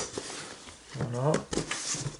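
Magic: The Gathering cards being handled and a stack set down on the piles: a sharp tap at the very start, then soft scuffing as the cards are placed near the end.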